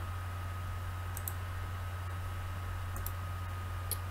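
A few faint computer mouse clicks, spread about a second or two apart, over a steady low electrical hum and a thin steady whine.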